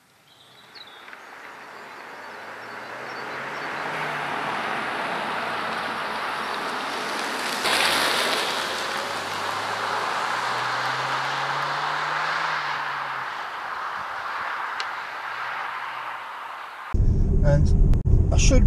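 MG HS SUV with a 1.5-litre turbo petrol engine driving along a lane toward the camera. Road and tyre rush builds over the first few seconds and stays steady, loudest about halfway. Beneath it a low engine note rises and falls in pitch.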